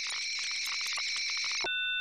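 Electromagnetic noise from a laptop, picked up by a telephone pickup coil and played through a Eurorack modular synthesizer: a dense, high-pitched chirping crackle full of clicks that near the end gives way to a steady held chord of electronic tones.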